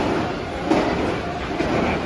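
Steel inverted roller-coaster train rolling past on its overhead track, a steady rumble of wheels on steel rail with a few clacks.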